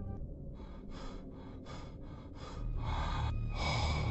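Quick, rhythmic panting breaths, about three a second. In the last second and a half a low rumble rises beneath them and grows louder.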